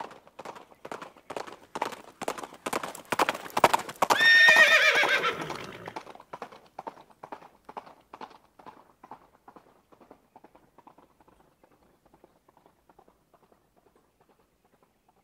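Horse hoofbeats in an even clip-clop, growing louder, then a loud whinny with a falling pitch about four seconds in, after which the hoofbeats fade away.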